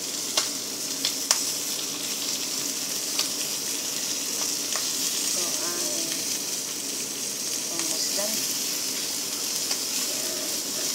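Whole capelin frying in hot oil in a pan, a steady sizzle. A few sharp clicks in the first seconds are wooden chopsticks knocking on the pan as the fish are turned.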